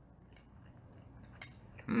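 Quiet eating of a spoonful of oatmeal: a faint click of the spoon about a second and a half in, then a man's short closed-mouth "hmm" of approval near the end.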